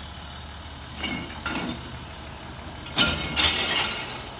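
Steady low hum of an idling engine in the background. Near the end comes a louder rustling of palm fronds brushing close to the microphone, with lighter rustling about a second in.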